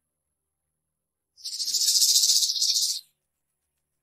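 A single high, fluttering hiss lasting under two seconds, starting about a second and a half in and stopping abruptly.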